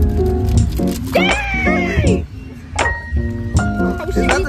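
Background music with a steady bass beat and a pitched melody. A bending, gliding voice-like line runs for about a second near the middle.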